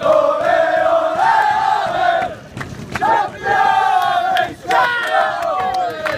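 A football team's celebration chant: a group of men chanting and singing together loudly on held notes. It breaks off briefly about two and a half seconds in, then starts again with hand claps in the second half.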